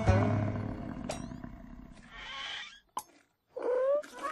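Cartoon bull bellowing: a loud, low roar that fades over about two seconds, followed by a short hiss. Then a sharp click, a brief pause, and a short rising pitched glide near the end.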